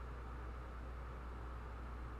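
Room tone: a steady low hum under a faint even hiss, with nothing else happening.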